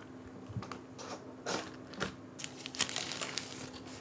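Unboxing handling noise: a cardboard keyboard box opened and a small mechanical keyboard lifted out of it, with soft rustling and a few light clicks and knocks.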